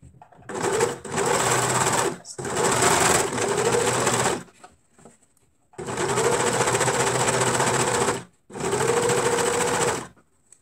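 Overlock machine (serger) running at speed as it overlocks a seam through two layers of fabric. It sews in four steady runs of roughly one and a half to two and a half seconds, with brief stops between them.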